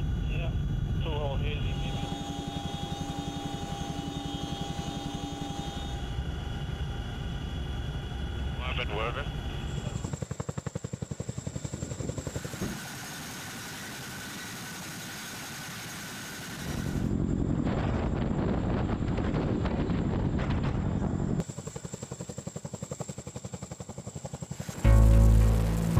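CH-47 Chinook tandem-rotor helicopter running, first as a steady engine and rotor noise inside the cockpit, then hovering, with the rapid, even beat of its rotor blades. The sound changes abruptly several times.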